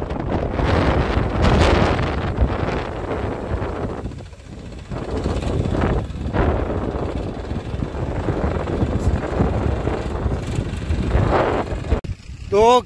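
Powertrac diesel tractor running as it pulls a tined implement through tilled soil, with wind buffeting the microphone. The noise dips briefly a little before the middle.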